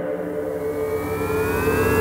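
Electronic synthesizer music building up: held synth tones under a rising noise sweep and a cluster of synth tones gliding upward in pitch through the second second.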